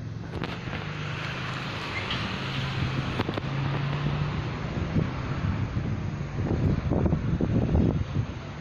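45-inch five-blade ceiling fan running at speed, wobbling: a steady rush of air from the blades over a low motor hum, with a few faint ticks. The air turns into a fluttering rumble on the microphone in the last two seconds.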